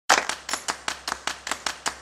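A rapid, evenly spaced series of sharp clicks, about five a second, the first the loudest.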